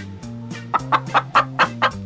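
A hen clucking in a quick run of short clucks, over background music with a steady low bass line.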